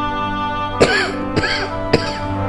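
A man coughing and clearing his throat three times in quick succession, the first the loudest, over soft background music made of held, steady tones.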